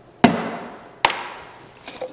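Two glass liquor bottles set down one after the other on a glass-topped table, about a second apart: two sharp knocks, each with a short ringing tail.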